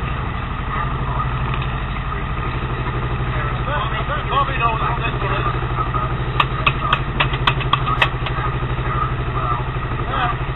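Steady low drone of a boat engine running with an even pulse, and a quick run of sharp hand claps between about six and eight seconds in.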